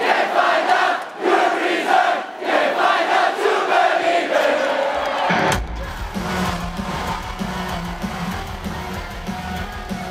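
A concert crowd singing the opening line of a song unaccompanied; about five and a half seconds in the rock band crashes in, loud electric guitars and heavy low end taking over.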